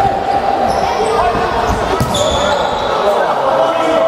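Futsal ball being played on a wooden sports-hall floor, with a sharp kick or bounce about two seconds in, amid players' shouting that echoes in the hall.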